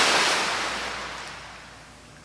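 Sea-wave sound effect: a rush of surf-like noise, loudest at the start and fading away steadily.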